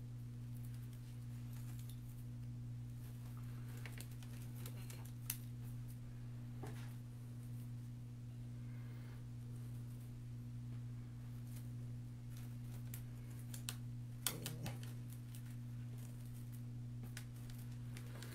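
Faint rustling and scattered light clicks of artificial berry sprigs being handled and pushed into a grapevine wreath, with a small cluster of clicks about fourteen seconds in, over a steady low electrical hum.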